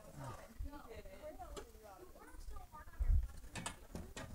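Faint off-microphone talk among several people, with a few sharp clicks and a dull low thump about three seconds in.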